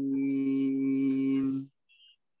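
A reciter's voice holding the closing vowel of a Quran verse on one long, level note in a chanted recitation melody, cutting off sharply near the end.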